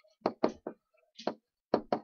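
About six short, irregular knocks and taps in two seconds: a pen tapping against an interactive whiteboard as words are handwritten.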